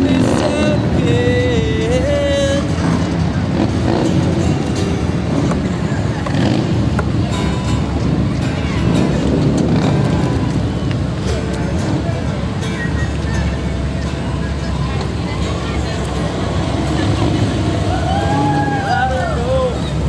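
Cars and trucks rolling slowly past with their engines running, over a steady background of people's voices and chatter.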